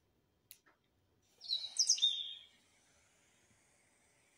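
A bird chirping: a quick run of high whistled notes with fast pitch slides, starting about a second and a half in and lasting about a second, after a faint click.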